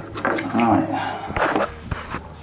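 A man's voice speaking indistinctly, then two short, low knocks about a second and a half in and near the end.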